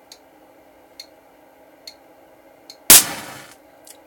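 An electric match (pyrotechnic igniter) firing once its current reaches about 570 milliamps: a single sharp bang about three seconds in, followed by a brief fizzing hiss of about half a second. Before it, a bench power supply's cooling fan hums steadily, with faint ticks about once a second.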